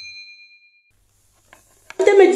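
Notification-bell chime sound effect from a subscribe-button animation: a bright ding ringing on and fading out within the first second. Then faint hiss with a couple of soft clicks near the end.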